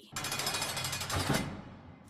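Channel intro sting: a burst of rapid, stuttering static-like noise with a low hit about a second in, fading out before the end.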